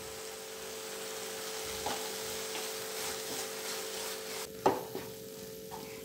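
Grated carrot sizzling in a nonstick frying pan as it is stirred and pushed around with a wooden spatula. One sharp knock, the spatula striking the pan, comes about three-quarters of the way through.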